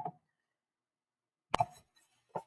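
Near silence, broken about one and a half seconds in by a single sharp click with a brief trail after it.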